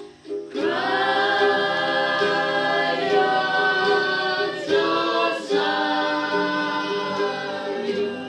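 A group of voices singing together in long held notes, with ukulele strumming around them. The singing comes in about half a second in, breaks off with a sliding note around five seconds, then carries on.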